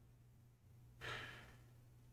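Near silence with a faint low hum, broken about halfway through by one short breath out, a sigh.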